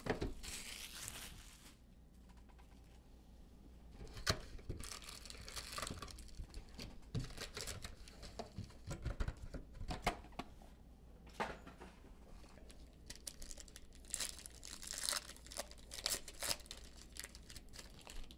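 Trading-card pack wrappers crinkling as the packs are handled and torn open, with small clicks and rustles from the cardboard box. The crinkling comes in scattered bursts, loudest in a run of tearing about two-thirds of the way through.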